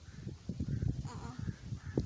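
A crow cawing, with some quiet talk.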